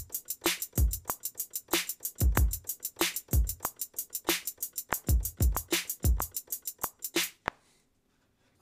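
Programmed hip-hop drum-machine beat from a 'Trap Door' kit playing back at 94 BPM: kicks and snares under a fast, steady run of hi-hats. It stops abruptly near the end. The snare is heard as not yet deep enough and is about to be tuned lower.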